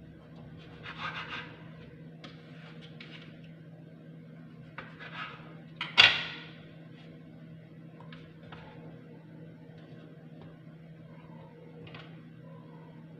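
Kitchen knife cutting slices of bread into pieces on a plastic cutting board: a few short scraping strokes through the bread, and a sharp knock with a brief ring about halfway through, the loudest sound.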